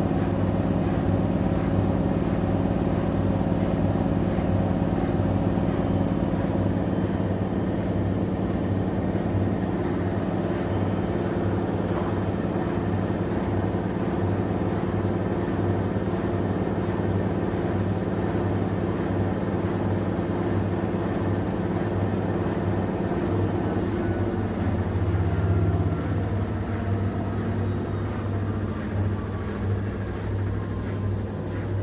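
Two front-loading washing machines, a Miele W1 and an AEG, running a wash cycle side by side: a steady motor hum as the drums turn the wet load, with faint tones gliding slowly down in pitch over the last several seconds.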